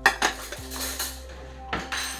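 Dishes and cutlery clattering as they are handled on a kitchen counter: sharp clinks and knocks at the start, a rattling stretch to about a second in, and another knock near the end.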